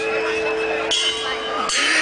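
Live rock band heard through an outdoor PA from within the crowd, holding sustained notes in a pause between sung lines, with people's voices close by.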